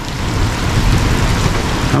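Heavy rain falling hard: a dense, steady hiss of a downpour.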